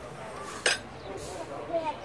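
Metal cutlery clinking once against a ceramic plate, a single sharp clink about a third of the way in, over faint low voices.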